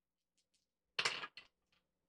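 A single die rolled into a wooden dice tray: one short clatter about a second in that fades within half a second.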